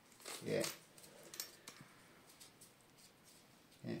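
Faint clicks and light rustling as a cordless drill and cloth are handled by gloved hands; the drill is not running. A short spoken "yeah" comes at the start and again at the end.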